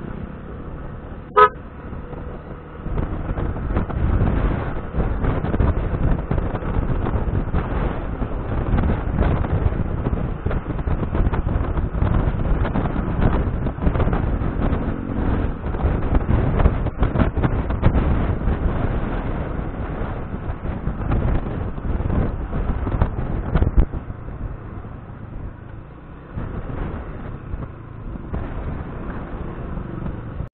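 Riding a Yamaha motor scooter: a short horn beep about a second in, then engine and wind noise on the microphone grow louder as it speeds up, easing off near the end as it slows.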